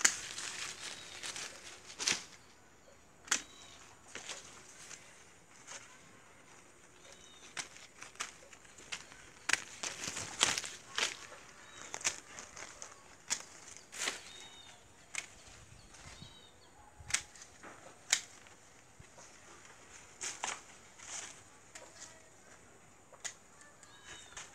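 Pruning shears snipping kaca piring (gardenia) twigs, a string of sharp irregular clicks, among the rustle of leaves and branches being handled.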